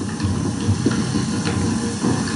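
Steady background hiss of an old TV recording, with no speech or music.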